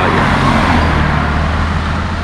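A motor vehicle going past: road noise with a steady low engine hum that grows stronger about halfway through.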